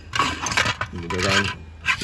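Handling noise as a gloved hand rummages among plastic trim and tools in a car's footwell: rubbing and scraping, with a sharp click just before the end.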